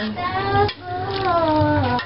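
A woman's voice in long, gliding, sing-song tones, like singing or drawn-out speech, with one long falling note in the second half.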